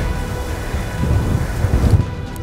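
Wind buffeting the microphone in uneven low rumbles that swell near the end, over a faint sustained music drone.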